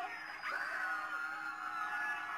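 A high-pitched human voice crying out, held in one long steady note from about half a second in.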